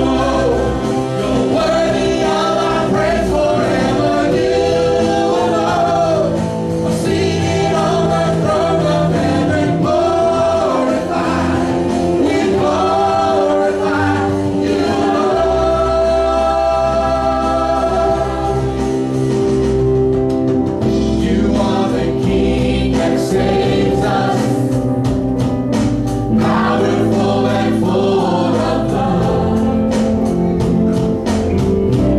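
Live church worship band performing a contemporary worship song: mixed lead and backing singers over keyboard, guitar and drums. The percussion hits grow more prominent in the last third.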